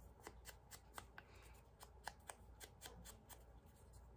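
Faint, quick light tapping and paper rustle, about four taps a second: a small ink blending tool dabbed against the edges of a paper word strip to ink it.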